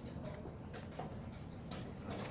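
About half a dozen light, irregularly spaced clicks over a steady low room hum.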